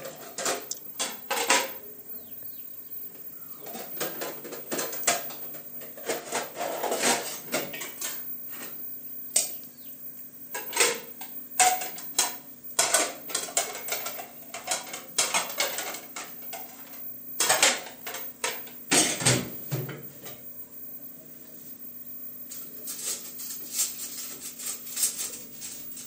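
Dishes and metal plates clinking and clattering as they are handled at a sink and set into a wire drying rack, in irregular knocks and clinks, over a faint steady hum.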